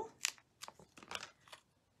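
Faint crinkly clicks, four or five spread over two seconds, of paper and a foam adhesive dimensional being handled and pressed onto a card panel.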